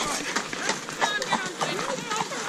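Horses' hooves clip-clopping on a tarmac lane, several horses walking at once, with voices over them.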